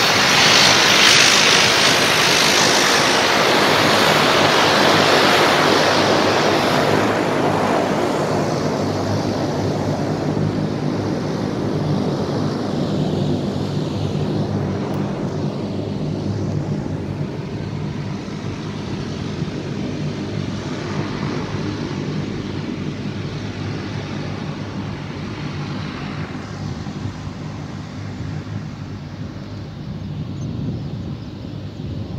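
Engines of a twin-engine turboprop Air Force plane taxiing slowly on the runway, a steady propeller drone with a low hum. It is loudest for the first several seconds, then fades gradually as the plane moves away.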